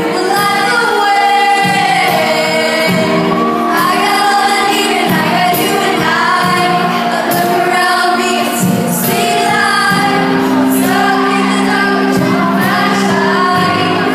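A female pop singer singing live into a microphone over instrumental accompaniment, heard from among the audience of a large concert hall.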